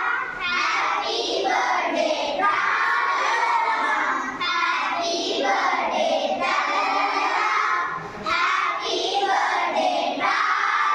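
A group of schoolchildren singing together loudly, a birthday song in phrases with a brief breath about every four seconds.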